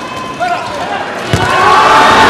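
A handball thudding on an indoor court and players' shoes squeaking, with one sharp thud about a second and a half in. Right after it, crowd noise and chanting swell.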